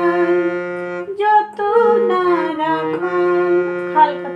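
Harmonium playing a melody over a held low drone note, with a voice singing along in wavering pitch from about a second in.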